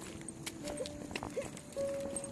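Footsteps in flip-flop sandals on concrete: a few faint, irregular slaps and clicks.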